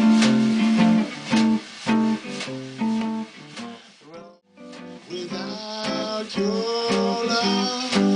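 Archtop guitar playing a swing instrumental passage over snare drum strokes. The music drops out briefly about four seconds in, then guitar and drum resume.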